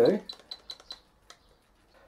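A quick run of about five short, light clicks over the first second or so, from the buttons or scroll wheel of an RC helicopter's radio transmitter being pressed.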